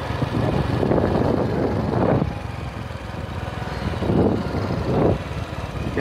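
Hero Honda CD 100 Deluxe motorcycle's single-cylinder four-stroke engine running steadily while the bike is ridden along a road. Rushing noise swells twice, in the first two seconds and again around four to five seconds in.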